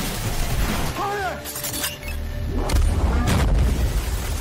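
Action-film sound mix: score music under a run of sharp crashes and shattering impacts, with a short vocal cry about a second in. A deep rumbling boom swells in the second half and is the loudest part.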